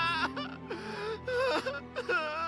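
A young male voice-acted character sobbing and wailing in long, broken cries that catch and break off, with short gasping breaths between them, over soft background music.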